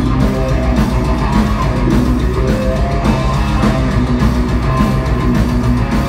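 Heavy metal band playing live at a steady loud level: distorted electric guitars, bass guitar and a drum kit.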